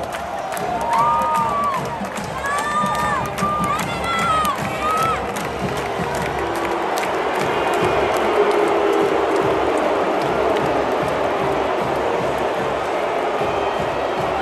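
A large stadium crowd cheering, with shouts and whoops over marching band music. About six seconds in, the cheering swells and holds, steady and loud.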